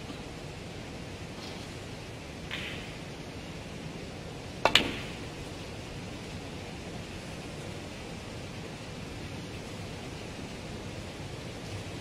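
A single snooker shot: a sharp double click, the cue tip striking the cue ball and the cue ball hitting a red almost at once, about four and a half seconds in, over the steady hush of a quiet arena.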